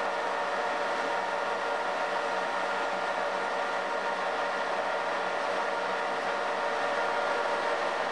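Metal lathe running steadily, turning a rifle barrel while its muzzle is cut to an 11-degree target crown; a constant hum of several steady tones over machine noise.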